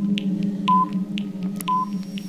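Quiz countdown timer sound effect: ticking with a short electronic beep about once a second, two beeps falling inside, over a steady low hum.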